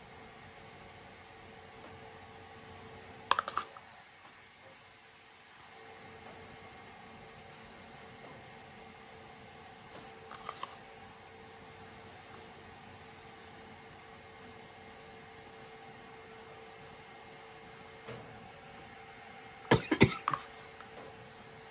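Steady faint room hum, broken by a few sharp clicks and knocks from plastic paint cups and a plastic spoon being handled on the work table: a loud cluster about three seconds in, a softer pair near the middle, and another loud cluster at the end.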